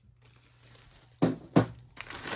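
Plastic bag and paper wrapping crinkling as an object is unwrapped by hand, with two short knocks a little over a second in.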